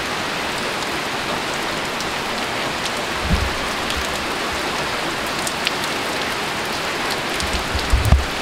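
Heavy hurricane rain pouring down steadily on a roof and porch screen enclosure, an even hiss. Two brief low thumps break through, one about three seconds in and one near the end.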